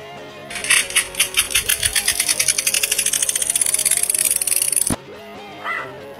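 A fast rattling, about ten sharp clicks a second for around four seconds, then cut off suddenly, over background music.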